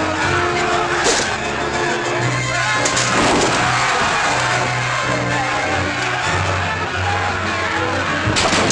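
Orchestral film score playing over a crowd of onlookers shouting, with a few sharp clashes of sword blades: one about a second in, another near three seconds.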